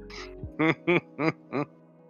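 A person laughing: four short, evenly spaced bursts after a soft breath, over a quiet steady music bed.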